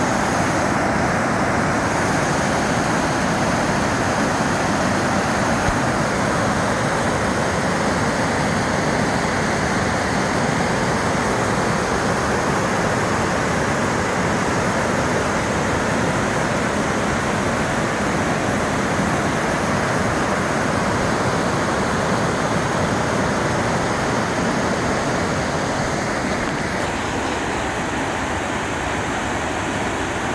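Steady rushing of a waterfall, falling water spilling over rock ledges into a pool, an even wash of sound that does not let up.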